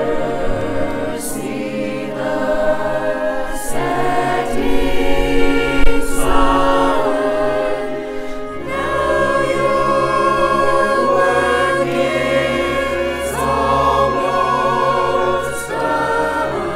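A mixed choir of men's and women's voices singing sacred choral music in slow, held notes with vibrato, moving to a new chord every second or two.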